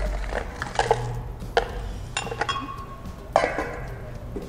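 Stainless steel bowls knocking and clinking as ingredients are tipped from a bowl into a glass blender jar, a handful of separate knocks. One strike about two seconds in leaves the bowl ringing for about a second. A low steady hum runs underneath.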